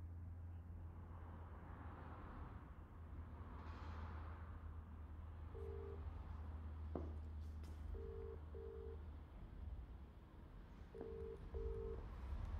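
British telephone ringing tone heard through a phone's speaker as an outgoing call rings out unanswered. From about halfway in it comes as the UK double ring, two short beeps close together and then a pause of a couple of seconds, over a steady low hum.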